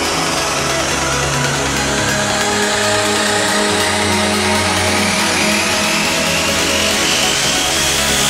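Instrumental uplifting trance: long held synth chords and bass under a sweep that rises steadily in pitch, with no beat.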